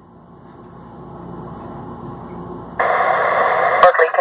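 Two-way radio dispatch channel in the pause between transmissions: faint low background noise, then about three seconds in the channel opens with a sudden loud burst of static hiss lasting about a second, ending in a click just before the dispatcher speaks again.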